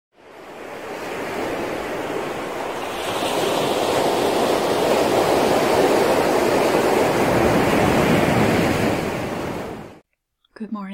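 Ocean surf washing onto a beach, a steady rush of waves that fades in at the start, swells a little about three seconds in, and fades out near the end.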